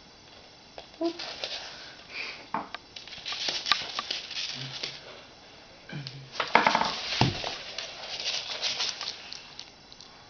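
Irregular taps, clicks and scrapes of a hand and a bearded dragon moving about on a wooden floor, with the loudest burst about six seconds in.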